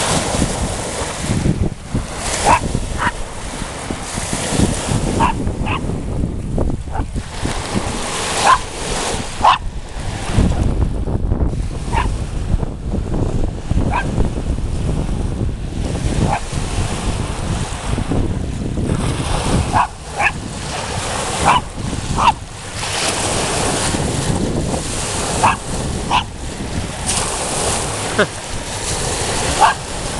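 Small dog giving short, sharp barks at irregular intervals, over the steady wash of small waves breaking on the shore. Wind rumbles on the microphone now and then, most strongly about a third of the way in.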